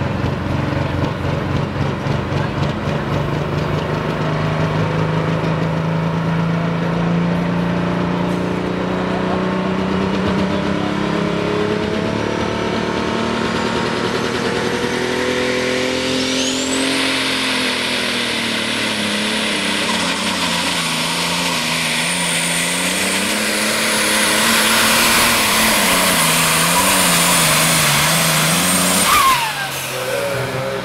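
Allis-Chalmers D21 pulling tractor's turbocharged diesel engine running while hooked to the sled, its pitch slowly creeping up. About halfway through it goes to full throttle: a high turbo whine rises sharply and holds while the engine note rises and falls under the load of the pull. Near the end the throttle comes off and the whine drops away quickly.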